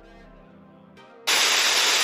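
Loud television static hiss, an even white-noise rush that starts suddenly a little past halfway, after a faint lingering tone.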